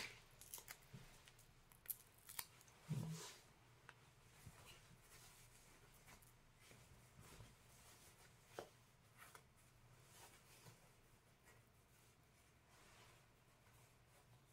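Faint, scattered clicks and crackles of a small self-adhesive Velcro dot being handled and its backing peeled off, with light rustling of the cotton cape fabric. A brief low sound stands out about three seconds in.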